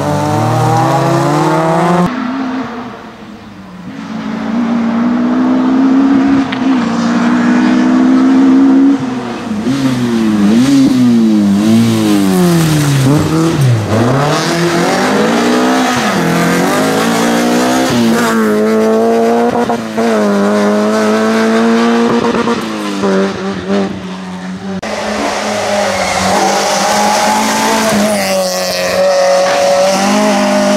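Rally cars' engines revving hard as they pass one after another, the pitch repeatedly climbing and dropping with each gear change and lift. In the middle the revs swing up and down quickly several times. The sound changes abruptly twice as the footage cuts to another car.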